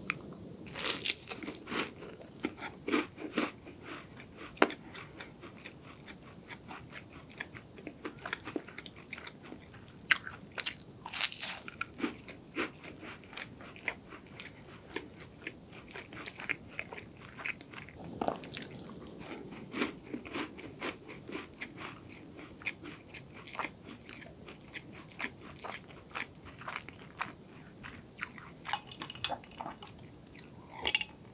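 Crisp, flaky palmier carré pastry being bitten and chewed close to the microphone: a run of sharp crunches and crackles. The loudest bites come about a second in, around ten to twelve seconds, and around eighteen seconds.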